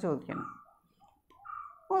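A few faint, short, high-pitched animal calls, scattered over about a second and a half.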